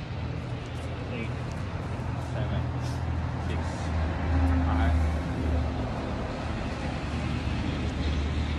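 Road traffic: a low, steady vehicle-engine rumble that swells about four seconds in, as a large vehicle passes or idles close by.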